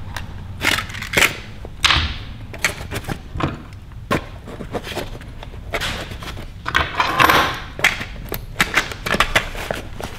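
A Veto Pro Pac MB2 tool bag being handled: hand tools and small plastic cases click and knock against each other as hands dig through its pockets, and there is a longer rustle of the bag's fabric about seven seconds in.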